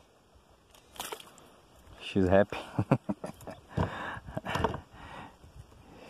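A man's voice in short, unclear utterances, with a brief sudden noise about a second in.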